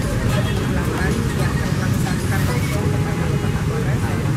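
A woman's voice, half buried under a steady low rumble of outdoor background noise.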